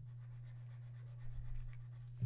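A steady low hum with faint scratching, rubbing sounds a little past the middle.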